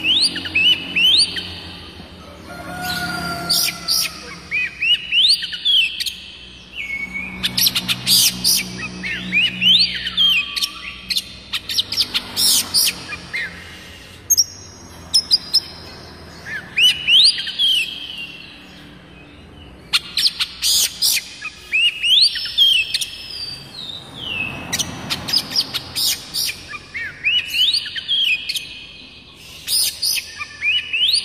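Oriental magpie-robin (white-breasted kacer) singing: repeated phrases of clear whistled notes that slide up and down, mixed with sharp ticking notes, each phrase followed by a pause of a second or two.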